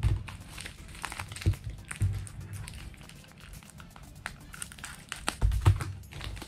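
Plastic pouches and a plastic bag crinkling, with irregular light taps and knocks as items are picked up and set down on a table, over background music.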